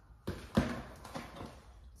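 Plastic-wrapped meat trays set down on a kitchen counter: two quick thuds about half a second in, the second the louder, then a few light taps as the packages are handled.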